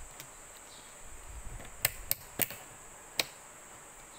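Rotary range selector switch of an analog multitester clicking through its detents as it is set to the ×10 ohms range: four sharp, separate clicks in the second half, over light handling rustle.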